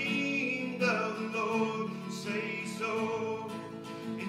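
A man singing a praise and worship song, accompanying himself on an acoustic guitar.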